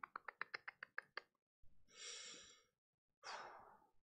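Faint, rapid clicking: about ten sharp clicks in the first second or so. Two soft breathy exhales follow.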